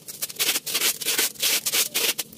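Adhesive tape being pulled off its roll in several short, hissing pulls as it is wound around a tube of joined tin cans.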